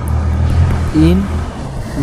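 A steady low rumble under the lecture, with a single short spoken word about a second in.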